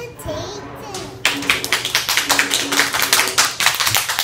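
Hand clapping from several people, a scattered round of applause that breaks out about a second in and keeps going, with a child's voice faintly under it.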